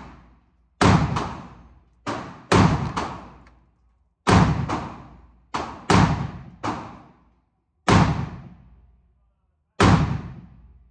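A .223 AR pistol with a binary trigger firing about ten shots, singly and in quick pairs a few tenths of a second apart, as the trigger fires on pull and on release. Each shot echoes briefly in the enclosed indoor range.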